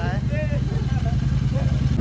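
An engine idling steadily, a low even hum with rapid firing pulses.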